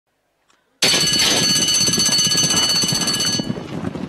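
Racetrack starting-gate bell ringing loudly for about two and a half seconds, starting suddenly as the gates open, over the clatter of the gates and the horses' hooves breaking from the stalls.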